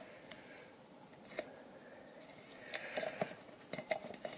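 Duct tape being pressed and folded over the rim of an empty tin can by hand: faint rustling with a few small taps, most of them in the second half.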